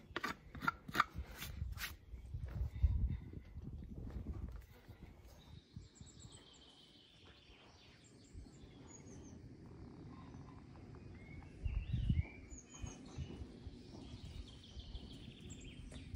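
About half a dozen quick scraping strokes of a farrier's hoof knife on a horse's hoof in the first two seconds, then outdoor ambience with small birds chirping and occasional low rumbles.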